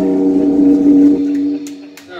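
A final held chord on a Jackson V electric guitar ringing through a Marshall amp at the end of a heavy metal song, dying away and cut off about one and a half seconds in. A few sharp clicks follow near the end.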